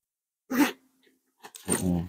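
Short non-word vocal sounds from a person: a brief cough-like burst about half a second in, then a low voiced sound near the end.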